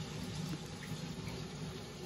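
Steady running water from a large aquarium's circulation, an even watery hiss with no breaks.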